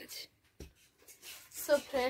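Thin plastic bag rustling briefly, then a single soft knock; a woman starts talking near the end.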